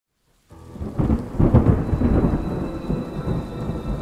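Thunder rumbling over steady rain, starting about half a second in and loudest around a second and a half, then slowly easing off.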